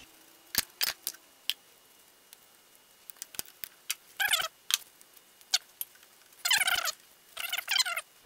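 Scattered metal clicks and clinks of a wrench and small steel gears as the nut is undone and the reversing gears on an Atlas Craftsman lathe headstock are worked off their shouldered bolts, with two longer runs of clicking about four and six and a half seconds in.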